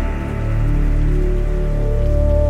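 Slow psybient electronic music: sustained deep bass notes and synth pads under a soft, even rain-like hiss.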